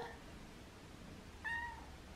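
A cat gives one short, high meow about one and a half seconds in.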